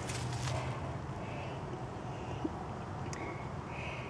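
Quiet outdoor background with faint rustling of strawberry leaves as the plants are handled by hand, and a soft click or two. A few faint, short high notes sit in the background.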